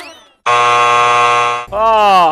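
Game-show time-up buzzer: one loud, steady buzz lasting about a second, marking the countdown clock reaching zero and the end of the round. A short swooping tone follows near the end.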